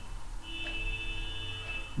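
A steady high-pitched tone with a fainter lower tone beneath it, starting about half a second in and stopping just before the end, over a low hum.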